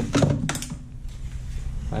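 A few sharp clicks and light knocks in the first half-second as a bungee cord's hooks are handled around an engine bay, then only faint background.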